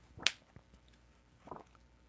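Objects being handled: a sharp snap about a quarter second in, then a softer, duller one about a second and a half in.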